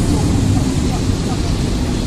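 Steady low rumble of outdoor background noise with faint voices under it.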